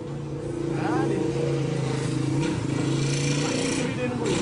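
A road vehicle's engine running steadily on the street, with a rushing noise that swells in the second half as it passes close; voices underneath.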